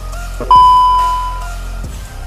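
Background music, with a single loud bell-like ding about half a second in that dies away over about a second.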